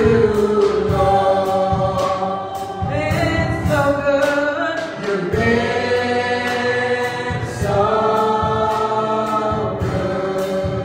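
Live gospel worship music: a group of singers holding long notes in harmony over a band with drums keeping a steady beat.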